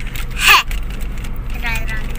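Steady low drone of a Honda car's engine and road noise heard inside the cabin while driving slowly. A short loud voice sound breaks in about half a second in, and talk resumes near the end.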